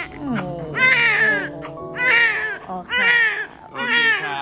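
Newborn baby crying: a string of loud wailing cries, about one a second, each arching up and then down in pitch.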